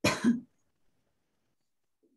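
A person clearing their throat once, a short two-part burst of about half a second right at the start, followed by silence.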